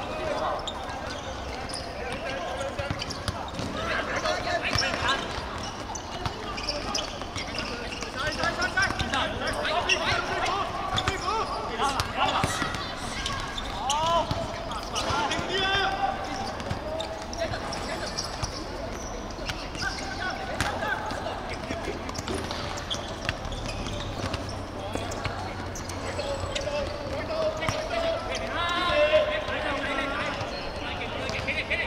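Football players shouting and calling to each other across the pitch, with scattered sharp thuds of the ball being kicked and bouncing on the hard court surface.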